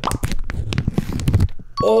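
A foil pouch torn open right at the microphone: a quick run of crinkling, tearing crackles that stops about a second and a half in. It tears open easily, "als boter" (like butter).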